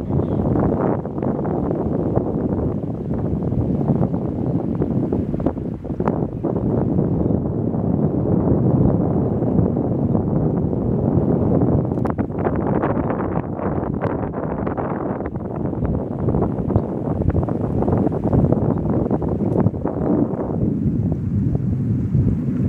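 Wind blowing across the microphone: a loud, uneven noise with a few brief clicks.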